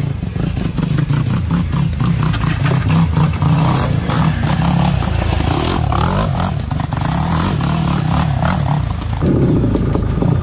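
Honda Odyssey FL350 buggy's two-stroke engine running and revving up and down while driving. The owner traces belt slip in this ride to glazed drive and driven clutches.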